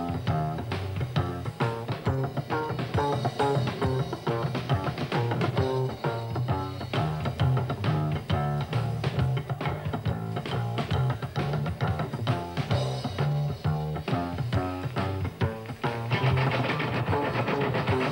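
Live rockabilly band playing an instrumental break with no singing: upright double bass, electric guitar and drums keeping a steady beat. Near the end the music grows louder and brighter.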